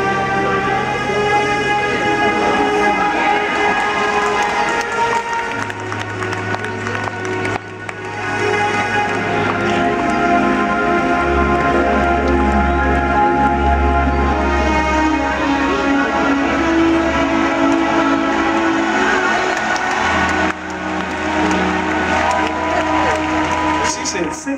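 Live band playing a slow ballad introduction: held keyboard chords and electric guitar over bass notes that change every few seconds.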